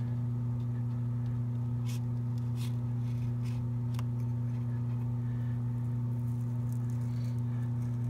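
A steady low hum, with a few faint scratching ticks about two to four seconds in from an X-Acto knife cutting the paper photo backdrop.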